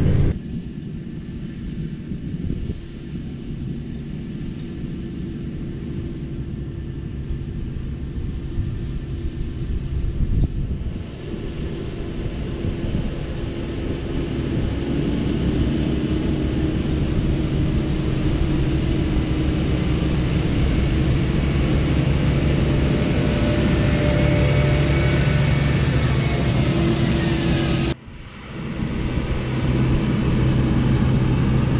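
Tractors and onion harvesting machinery running in a field, a steady engine rumble with wind buffeting the microphone. It grows louder about halfway through, and there are brief breaks where the shot changes.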